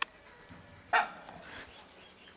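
A single short, sharp animal call about a second in, over a quiet background.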